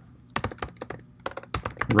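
Typing on a computer keyboard: a quick run of separate key clicks, about a dozen keystrokes.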